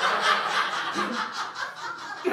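Audience laughing, strongest at the start and slowly dying down.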